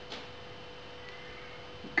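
Quiet room tone with a steady faint electrical hum, a short soft noise just after the start, then a man's voice starts right at the end.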